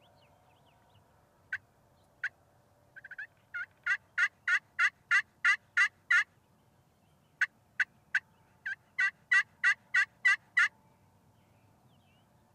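A series of wild turkey yelps, about three a second: a few scattered notes, then a run that builds in loudness, a pause of about a second, and a second run.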